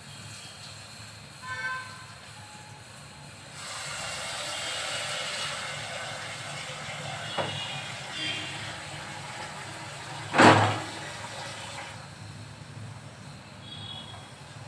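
Gas stove burner flame hissing steadily under tomatoes roasting on a wire mesh grill, growing louder a few seconds in. There is a single sharp knock about ten seconds in.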